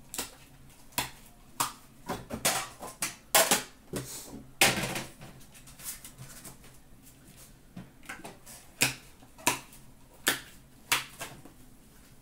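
Irregular clicks and light clanks of small metal card tins being handled: lids opened and shut, tins set down and stacked on a glass counter.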